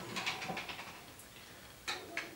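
Light clicks and rattles from a C-stand grip head and grip arm as the knob is loosened and the arm turned in it, with one sharp click near the end.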